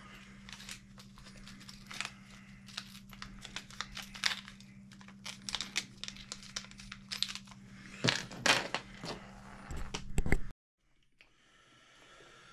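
Small irregular clicks and rattles of screws and plastic parts being handled and fitted by hand on an RC truck's rear end, busiest near the end, over a steady low hum. The sound cuts off suddenly shortly before the end.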